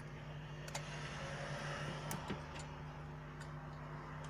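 A few sharp, light clicks as a Nokia Lumia 930's circuit board is handled and lifted out of the phone's frame, over a steady low hum.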